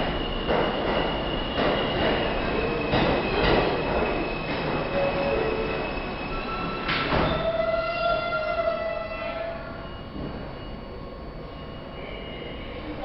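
R160 New York City subway train standing at the platform: running rail and car noise with knocks in the first half, then about seven seconds in a sharp noise and a steady tone lasting about two seconds as its doors close. The noise eases off near the end.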